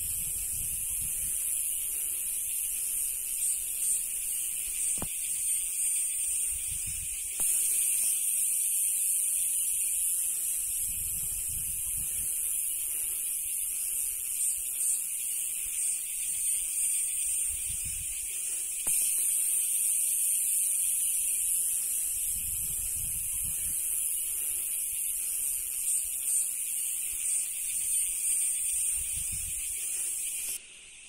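A steady, high-pitched chorus of buzzing insects, with brief low rumbles of wind on the microphone now and then.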